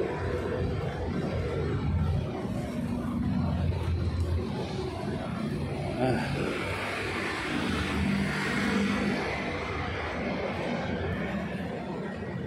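City street traffic: vehicle engines and tyres running by, with a steady low rumble.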